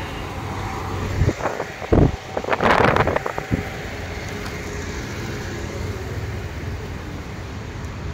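Steady low background rumble of a busy exhibition hall, with a few handling bumps and a short rustle about two to three seconds in.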